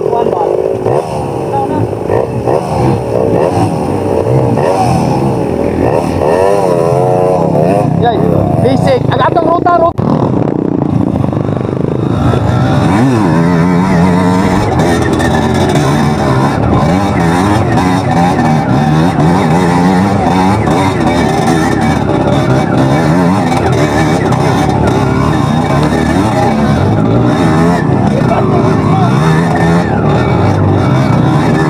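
Dirt bike engine running and revving up and down over a rough trail, its pitch rising and falling constantly, with a brief break about ten seconds in.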